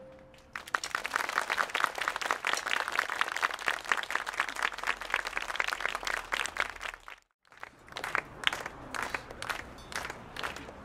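Audience applauding after a band piece ends. The clapping cuts off suddenly about seven seconds in, then goes on more thinly.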